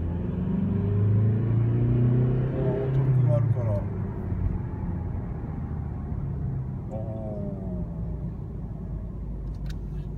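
Mazda Demio XD's 1.5-litre four-cylinder turbodiesel, heard from inside the cabin under hard acceleration with the pedal pressed down. The engine note climbs for about three and a half seconds, drops back, then climbs again from about seven seconds in.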